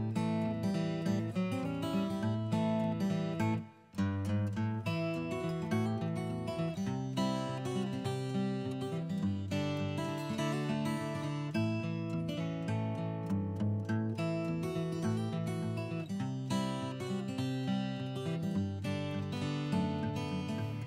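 Background music led by acoustic guitar, with a brief dropout about four seconds in.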